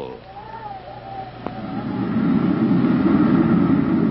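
A sound effect on the show's soundtrack: a faint wavering tone, a single click, then a low rumbling noise that swells up about halfway in and holds loud.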